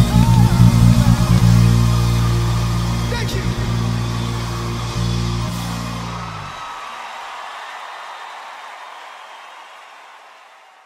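The end of a pop song played on a Sadowsky electric bass over a backing track with vocals. The sustained bass notes stop about six and a half seconds in, and the rest of the music fades out steadily toward silence.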